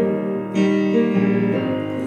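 Digital keyboard played in piano voice, holding sustained chords in an instrumental gap between sung lines, with a new, louder chord struck about half a second in.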